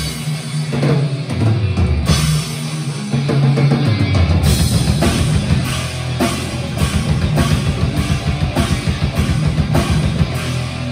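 Heavy metal band playing live, an instrumental passage of distorted electric guitars, bass guitar and drum kit. Held, heavy chords give way about four and a half seconds in to a fast, driving riff with steady drum hits.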